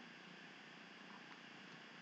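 Near silence: faint steady room tone and recording hiss.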